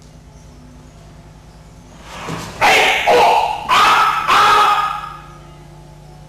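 Loud shouted kiai during a paired wooden-sword aikido exercise: four drawn-out shouts in quick succession, starting a little after two seconds in and ending about five seconds in.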